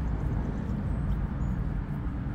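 Steady low outdoor background rumble with no distinct clicks or knocks.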